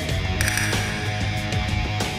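Edited background music with a steady beat, with a short bright noise, likely an edit sound effect, about half a second in.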